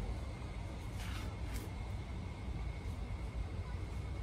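A low, steady background rumble with a faint, steady high-pitched tone over it, and a couple of faint brief rustles about a second in.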